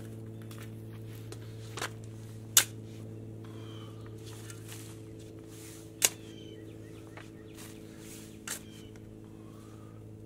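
Shovel working soil, with a few sharp knocks, the loudest about two and a half and six seconds in, over a steady low machine hum; faint bird chirps in between.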